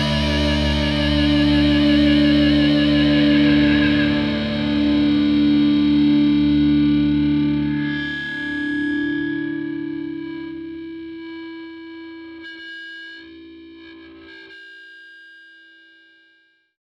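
The closing chord of a rock song on distorted electric guitar with effects, held and ringing out, slowly fading to silence.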